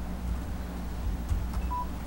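A short electronic beep near the end, over a steady low room hum.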